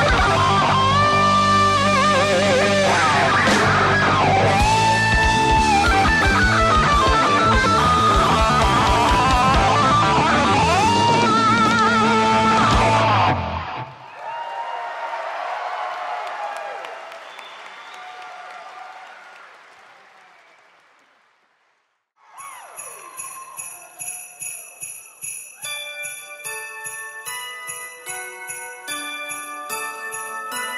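Live rock band finishing a song with an electric guitar lead over bass and drums, cutting off about 13 seconds in, followed by crowd noise that fades away to silence. About 22 seconds in, sleigh bells start jingling with a melody of chiming bell-like notes as the next song opens.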